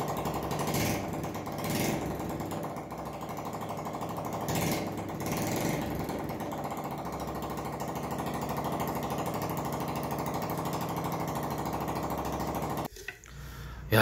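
Daelim Citi 100's small single-cylinder four-stroke engine running at a steady, rattly idle, with a few brief rises in the first half, then stopping abruptly near the end. It is the engine's first run after a new spark plug and carburettor were fitted.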